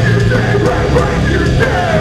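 Loud live hardcore hip-hop: a band with drum kit and electric guitar playing under rapped, shouted vocals through microphones.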